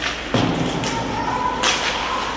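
A single hard thump from ice hockey play about a third of a second in, ringing out in the arena. A short scraping hiss follows near the end.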